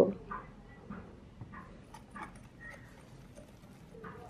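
Wire whisk working flour and water into a batter in a glass bowl: faint, irregular light taps and scrapes of the wires against the glass.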